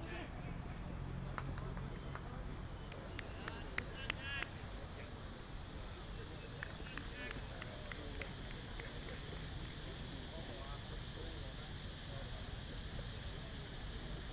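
Faint voices calling across an open cricket ground over steady outdoor background noise, with a few sharp clicks and short high chirps in the first half.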